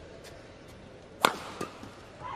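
A badminton racket striking a shuttlecock in a rally: one sharp, loud smack a little after a second in, followed by a fainter tap.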